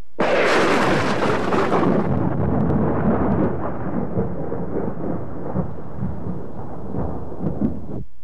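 Recorded thunder used as a sound effect in a TV promo: a sudden loud crack, then a long rolling rumble that slowly dies down and cuts off abruptly.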